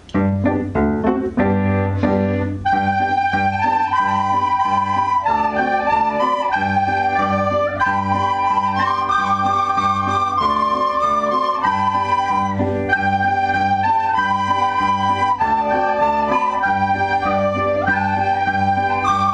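A class of recorders playing a melody together, starting together at once and carrying on steadily, over a low accompaniment with a regular beat.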